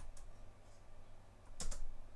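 Keystrokes on a laptop keyboard: a couple of taps at the start and a quick run of taps about a second and a half in.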